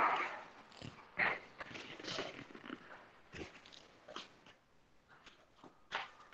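An animal calling in the background: short cries at the start, about a second in and about two seconds in, followed by scattered faint clicks.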